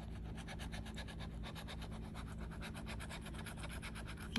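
Metal scratcher tool rubbing the latex coating off a paper scratch-off lottery ticket in quick, evenly repeated strokes. The ticket has an extra-thick scratch-off coating.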